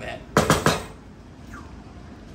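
A quick clatter of cookware about half a second in: three or four sharp knocks in a row, as the wooden stirring spoon and the large aluminum pot or its lid are handled.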